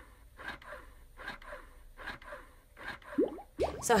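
Double electric breast pump running, a rhythmic suck-and-whoosh repeating about two to three times a second. A short rising sweep comes about three seconds in, just before speech starts.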